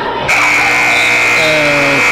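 Gymnasium scoreboard horn sounding the end of the quarter: one long, steady buzz that starts about a quarter second in.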